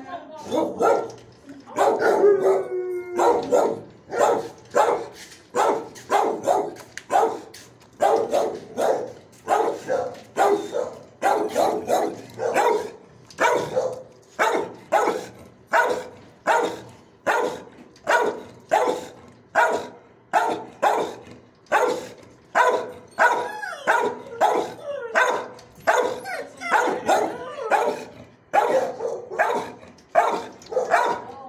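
Dogs barking over and over in a shelter kennel, about one and a half barks a second, each bark trailing off in echo. About two seconds in there is a longer, drawn-out howling bark.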